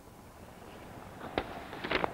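Quiet outdoor background with a few sharp clicks or knocks, one about a second and a half in and a couple more near the end.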